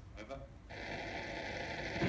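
Steady radio static from an amateur radio station receiver, coming in about a third of the way through.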